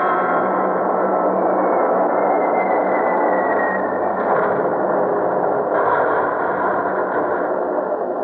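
Old-time radio battle sound effect: a dense, steady roar with a thin whine that slowly falls in pitch from about one to four seconds in.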